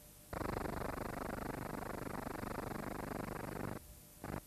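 A harsh, rapidly pulsing buzz that starts abruptly and cuts off after about three and a half seconds.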